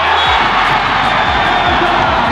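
Volleyball arena crowd cheering a won point, starting suddenly and staying loud, over background music with a steady beat.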